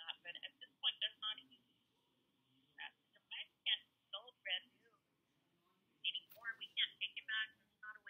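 Speech over a phone line: the customer service representative's voice coming faintly through the phone's speaker, thin, with no high end, in short broken phrases.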